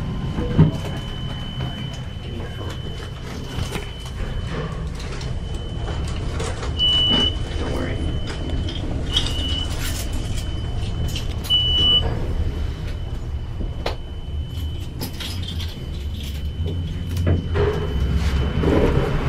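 Traction elevator car riding with its doors closed: a low ride rumble under a thin steady high whine, with three short beeps about two and a half seconds apart midway through.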